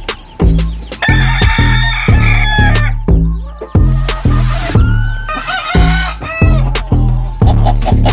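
A gamefowl rooster crowing, one long call starting about a second in, with further calls later, over background music with a heavy bass beat.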